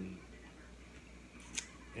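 Metal fork clicking and scraping once against a plate about a second and a half in, after a quiet stretch.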